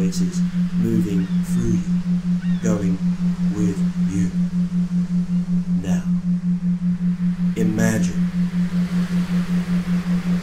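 A steady low electronic tone, pulsing evenly at a little over three pulses a second, of the isochronic-beat kind laid under hypnosis recordings.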